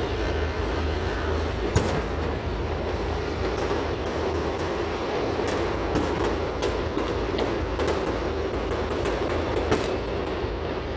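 Many fireworks exploding: a continuous rumbling din with sharper bangs at intervals. The loudest bang comes about two seconds in, and more bangs follow through the second half.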